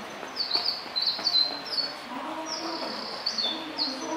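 Bird chirping: short, high chirps in quick runs, each run stepping down in pitch, with indistinct voices underneath.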